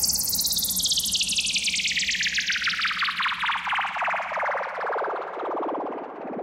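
An electronic DJ sweep effect: a synthesized sound made of rapid stuttering pulses, falling steadily in pitch from very high to low and fading out.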